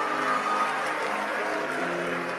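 Audience applauding over soft, sustained background keyboard music.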